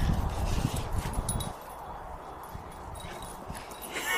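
A Bullmastiff and a French Bulldog puppy playing and scuffling, with a dense run of low knocks and scuffs for about a second and a half before it goes much quieter.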